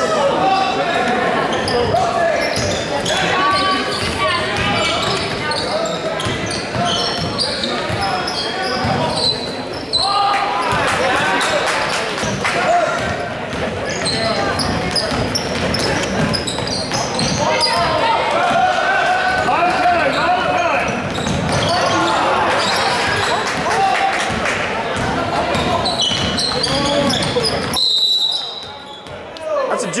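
Basketball bouncing on a hardwood gym floor, with echoing voices from the crowd and players. Near the end a short high whistle sounds and the noise drops off as play stops.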